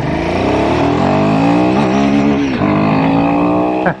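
Royal Enfield Himalayan 450's single-cylinder engine revving hard under full-throttle acceleration, its pitch climbing steadily. About two and a half seconds in the pitch drops and then climbs again, and the engine is taken up to what the rider takes for redline.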